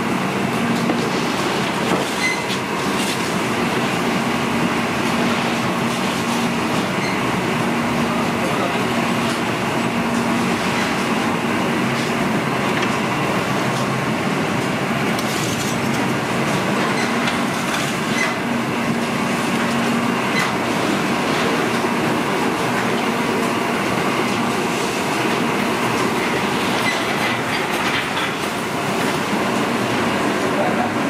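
Steady loud machinery din of a working bakery, with a faint hum that comes and goes and a few light knocks and clatters.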